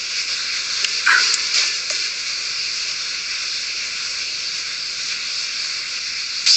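Steady high background hiss with no speech, and a faint brief sound about a second in.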